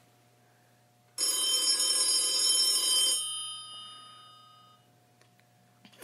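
A telephone bell rings once, starting about a second in; the ring lasts about two seconds and then dies away.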